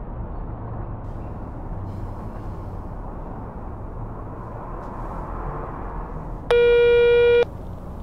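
A single loud, steady telephone tone of about a second sounds once a number has been dialled on a phone, the signal of a call that will not go through. Under it runs a steady low background rumble.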